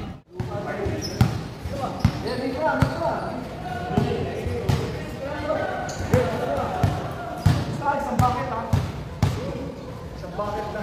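A basketball bouncing on a hard court, sharp thuds at irregular intervals about a second apart, with players' voices in the background.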